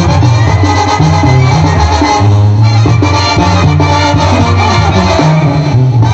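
Mexican brass banda playing live: massed brass over a sousaphone bass line that moves in steps, with a steady percussion beat.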